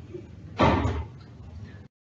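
A door shutting with a single heavy thud about half a second in, over low room tone. The audio then cuts off abruptly near the end.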